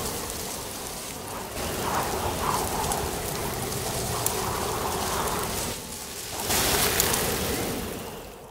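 Steady hiss of rain, dipping briefly about six seconds in and then rising again.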